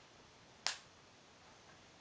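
A single sharp click, a little over half a second in, against faint room tone.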